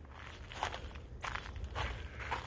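Footsteps on thin snow over garden ground, a few quiet steps.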